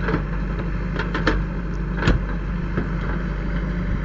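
Diesel engine of a JCB backhoe loader running steadily as it digs, with a few sharp knocks, the clearest about one and two seconds in.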